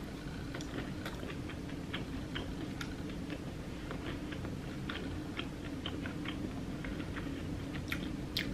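A person chewing a mouthful of McDonald's spicy chicken sandwich close to the microphone: many faint, irregular little clicks and crunches over a low, steady room hum.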